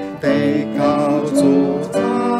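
A hymn sung with instrumental accompaniment, the voices holding long notes, with a short break between phrases just after the start.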